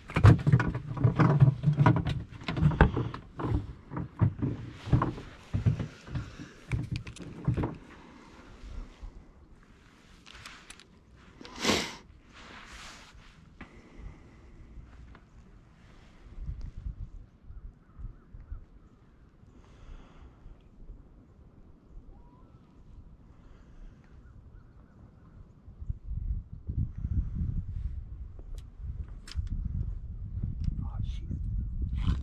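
Knocks and thumps on a small fishing boat for the first several seconds, with one short sharp sound about twelve seconds in. After that comes a low, steady rumble that grows louder near the end.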